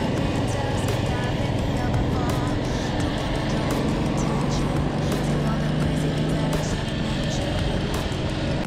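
Motorcycle at highway speed: the engine running steadily under heavy wind rush on the helmet-mounted microphone, with faint music underneath.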